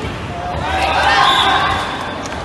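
Spectators shouting and cheering, swelling a little under a second in and easing off near the end, with a dodgeball bouncing on the court floor.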